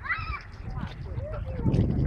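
Short high, rising-and-falling vocal calls from a person, then a louder low, rumbling noise building up near the end.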